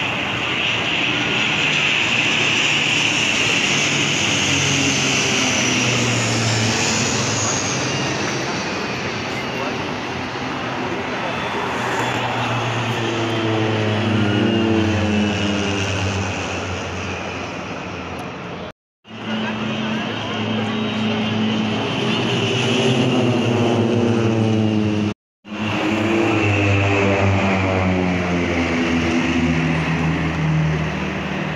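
Formations of twin-engine propeller aircraft flying low overhead, their engines and propellers droning loudly, the pitch sliding as they pass. The sound cuts out abruptly twice in the second half.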